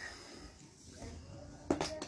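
A small child sipping from a plastic drink bottle, faint, with a short louder sound near the end.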